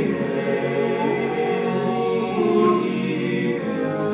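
Men's chorus singing a cappella, several voices holding sustained chords that shift slowly from one to the next.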